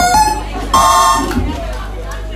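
Harsh electronic noise music: two loud buzzing blasts, a short one at the start and a longer one about three-quarters of a second in, over a steady low hum.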